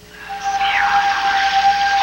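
Rushing water of a mountain stream fading in, with a single long held music note starting about a third of a second in.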